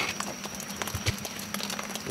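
Scattered, irregular light clicks and knocks over a faint steady background hum.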